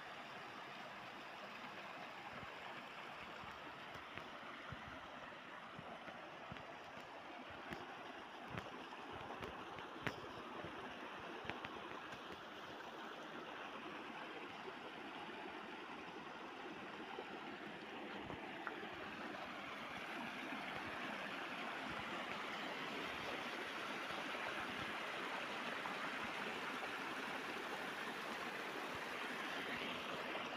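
Stream water running over rocks, a steady rushing that grows louder about two-thirds of the way through, with a few faint knocks around the middle.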